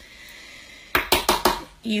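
A brand-new screw-top loose powder jar being banged hard, a quick run of sharp knocks starting about a second in. The powder is stuck and will not come out through the jar's sifter holes.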